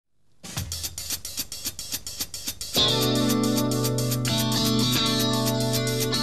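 Live rock band playing. A fast, even ticking rhythm of about eight strokes a second starts it off. About three seconds in, electric guitar and bass come in with a loud held chord, and the ticking goes on over it.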